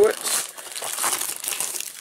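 Clear plastic shrink-wrap crinkling and tearing as it is stripped off a cardboard trading-card blaster box.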